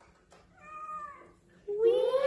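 A small black cat, held in a man's arms, meowing. A short meow comes about half a second in, then a much louder, long drawn-out meow starts near the end, rising and then sliding down in pitch.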